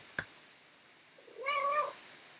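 A domestic cat meows once, a short, even-pitched call about one and a half seconds in, after a brief click near the start.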